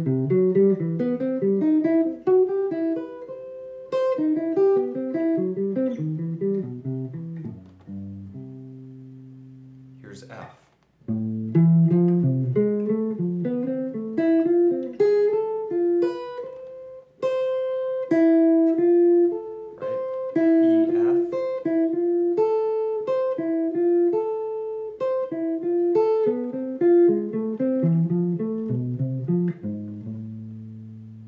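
Archtop electric jazz guitar picking major-triad arpeggios with added leading tones, note by note, moving key to key up the fretboard through the circle of fifths starting on C. A held chord closes the first phrase about eight seconds in, and after a brief break near eleven seconds the single-note runs resume.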